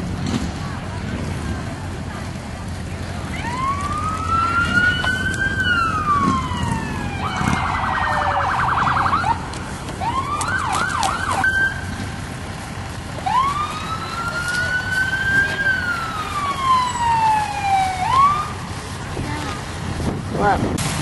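A siren sounding. A long wail rises and then falls slowly, a few seconds of fast yelp follow near the middle, then several short whoops, and a second long wail that rises and falls near the end.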